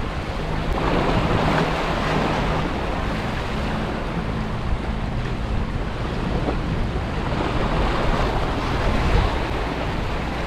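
Surf breaking and washing over jetty rocks, with wind buffeting the microphone; the wash swells about a second in and again near the end, over a faint low steady hum.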